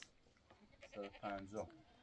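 A sheep bleating faintly: one call of under a second, about a second in.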